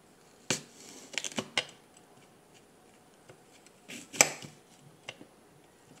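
Kitchen knife cutting through an apple and knocking against the plate beneath: several sharp clicks, the loudest about four seconds in.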